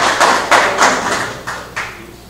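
Applause from a small group, heard as separate sharp claps about three a second, thinning out and dying away shortly before the end.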